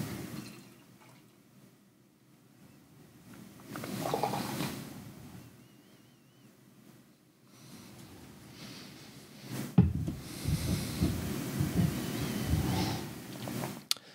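Imperial stout being poured from a 16 oz can into a glass snifter: liquid running and gurgling in spells, a short swell about four seconds in and a longer stretch over the last six seconds. A single sharp knock comes near ten seconds in.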